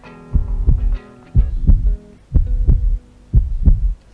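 Heartbeat sound effect: four double low thumps, about one beat a second, over a low sustained music drone.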